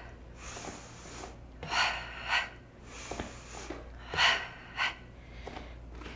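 A woman breathing hard through sharp, breathy exhales, coming in pairs twice, as she exerts herself in a high-intensity step-up exercise.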